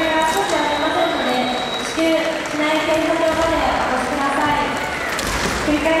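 Many voices overlapping and echoing in a large hall, some of them drawn out for half a second or more, with a brief knock about five seconds in.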